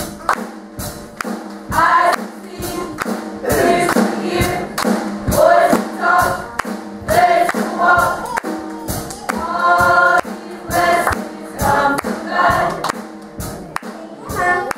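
Youth gospel choir singing, with sharp percussion hits on the beat about twice a second.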